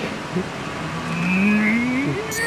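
A quarter-operated machine running, giving an engine-like whine that rises slowly in pitch from about half a second in.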